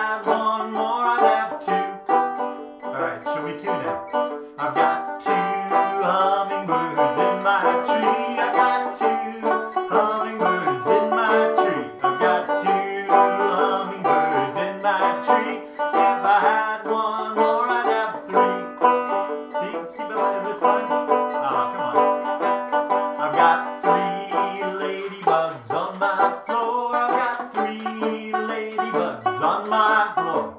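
Resonator banjo played continuously, a dense run of plucked notes in a bluegrass style.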